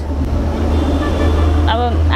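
Steady noise of a motor vehicle passing close by, over a constant low hum; a woman's voice comes back near the end.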